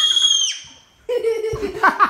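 A piercing high-pitched shriek that cuts off about half a second in, a moment of silence, then a child laughing in quick repeated bursts.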